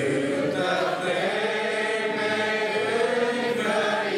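Congregation singing a hymn together, many voices on one sustained melodic line, with a new phrase starting right at the beginning.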